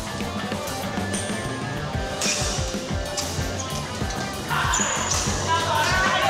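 Background music with a steady, thumping beat; a singing or talking voice joins about four and a half seconds in.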